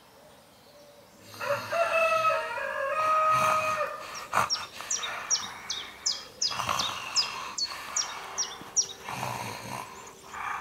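A rooster crowing, starting a little over a second in. It is followed by a small bird chirping repeatedly, each chirp a quick high whistle that falls in pitch, about two to three a second.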